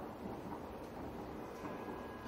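Steady room noise of a lecture hall: an even low hum and hiss with no distinct events.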